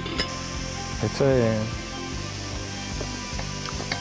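Background music with held chords, and under it the faint sizzle of oxtail pieces searing in olive oil in a pot. A short falling voice-like note sounds a little over a second in.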